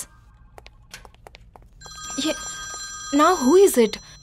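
Desk telephone ringing with a steady electronic ring that starts about two seconds in, after a few faint clicks; a voice speaks over it near the end.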